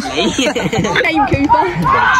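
Several people laughing and talking over one another, with a few words called out between the laughs.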